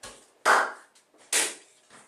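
Footsteps in a small room: two heavy steps a little under a second apart, with fainter ones at the start and end.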